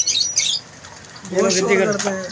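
Small caged birds chirping in quick, high twitters, thickest in the first half second, over the noise of a crowded bird and pet market.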